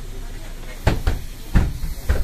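Doors of a MAN Lion's City city bus closing: a series of heavy thuds as the door leaves shut, about a second in and again near the end.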